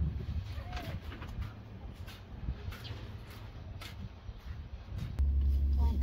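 Faint outdoor background with a few light clicks, then from about five seconds in a steady low rumble of a car's engine running, heard from inside the cabin.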